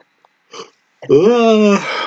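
A man's voice: a short sniff about half a second in, then a loud drawn-out voiced exclamation.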